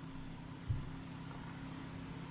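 Quiet room tone with a steady low hum, and one soft low thump about two-thirds of a second in.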